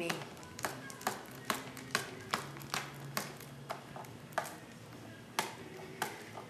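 Fingers picking and tapping at the sealed wrapping of a pack of scrapbook paper, struggling to open it: a string of sharp little clicks, about two a second, thinning out after about four seconds.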